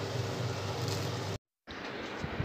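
Steady hiss with a low hum from a pan of prawn masala simmering on a gas stove. It cuts off abruptly about a second and a half in.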